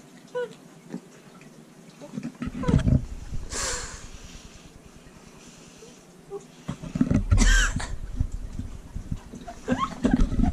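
A man coughing and gagging on a mouthful of dry, salty seasoned coating mix: a couple of short sputtering coughs a few seconds in, then a louder, drawn-out gagging groan near the end.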